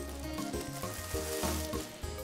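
Background music with a steady beat under a continuous hissing rustle of cloth, from clothes being lifted and pressed down into a suitcase.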